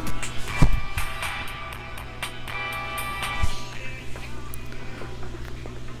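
A bass-heavy music track playing from Tribit XFree Tune Bluetooth over-ear headphones held off the head toward the microphone: a steady deep bass line under higher held notes, with a knock about half a second in. It plays loud and, to the listener's ear, with no distortion.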